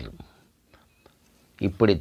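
A man speaking, breaking off for about a second and then going on.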